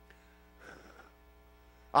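Faint steady electrical mains hum with a brief faint noise about half a second to a second in; a man's voice starts right at the end.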